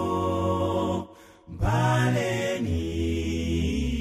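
Male gospel vocal group singing sustained chords in close harmony, with a deep bass line underneath; the singing breaks off for about half a second a second in, then comes back in.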